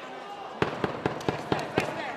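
A quick run of about seven sharp smacks, roughly five a second, with shouting voices behind.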